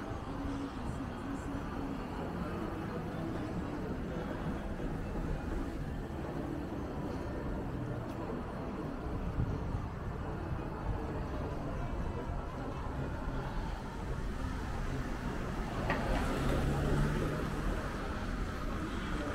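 City street traffic: cars driving past with a steady rumble of engines and tyres, louder near the end as a vehicle passes close.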